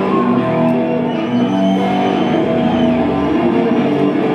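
Live psychobilly band music: guitar and upright double bass holding long, ringing notes, loud, with a high note sliding up and back down in the middle.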